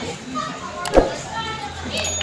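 Background chatter of several voices, with one sharp knock about a second in.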